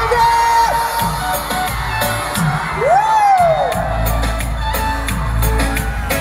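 Live music over a PA system with a heavy, repeating bass beat and crowd noise. About three seconds in, a single high whoop rises and falls.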